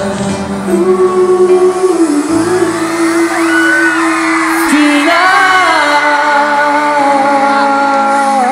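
A pop ballad sung live by a male singer over band backing, with long held notes and a wavering, vibrato-laden note near the end.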